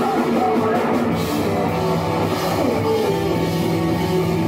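A rock band playing loud and live in the room: electric guitars, bass guitar and a drum kit with cymbals, in a heavy, punk-metal style.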